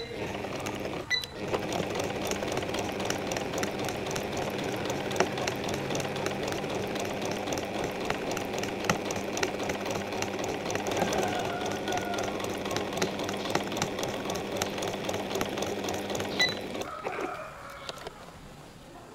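Electric sewing machine running steadily and stitching through layers of woven cotton fabric strips, a fast even chatter of needle strokes. It starts about a second in after a brief stop, and stops about a second before the end.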